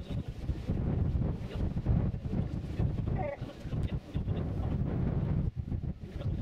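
Wind buffeting the microphone: a gusty, uneven low rumble that swells and dips throughout.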